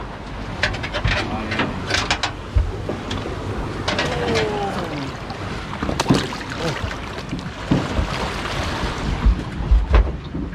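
Wind and sea noise around a small boat, with scattered knocks as a fish and gear are handled on the fibreglass deck.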